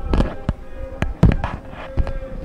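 A quick series of sharp knocks and thumps, about five in two seconds, over a faint steady tone.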